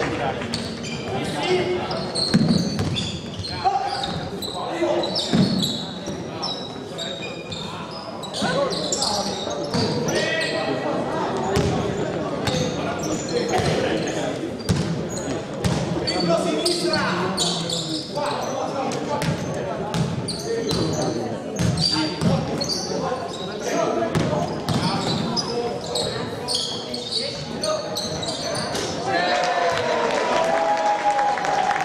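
A basketball bouncing repeatedly on a hardwood gym floor during play, with players' voices calling out, echoing in a large sports hall.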